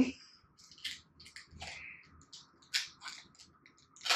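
Soft rustling and a scatter of short, light clicks as a small electronic device and its packaging are handled and turned over.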